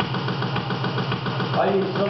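Electric and acoustic guitars strummed hard in a fast, even chugging rhythm that starts abruptly, with a voice briefly heard near the end.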